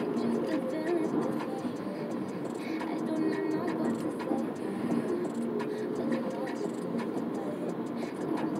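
Steady road and engine noise inside a moving car, with a car radio playing faintly under it.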